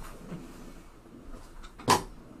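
Faint rustling of objects being handled, then a single sharp knock near the end.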